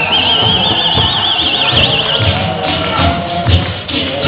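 Human beatbox performance through a PA: a steady kick-drum beat about every three-quarters of a second, with a high wavering tone warbling over it for the first two seconds.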